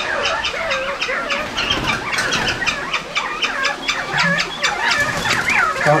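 Many caged birds chirping and calling at once: a dense chatter of rapid, short, high chirps with a few lower calls mixed in.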